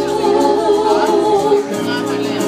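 Live band: a woman singing into a microphone over sustained keyboard chords and guitar, with the chord and bass changing about one and a half seconds in.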